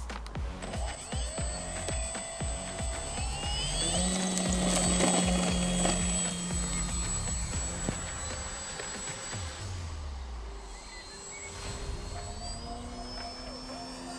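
FunCub RC model plane's electric motor and propeller whining as it throttles up for takeoff, the whine rising in pitch over the first few seconds and loudest about five seconds in, with music playing over it.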